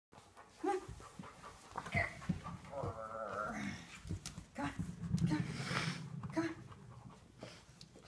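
A dog panting, with a few short vocal sounds and a wavering pitched sound about three seconds in.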